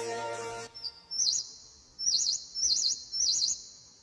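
Background music fading out, then a small bird chirping: four high, quickly warbling whistled calls, one after about a second and three more about half a second apart.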